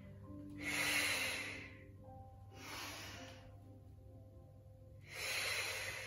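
A woman breathing audibly through the nose and mouth while holding a Pilates side plank: three breaths, the first and last the loudest. Faint background music with held notes plays under them.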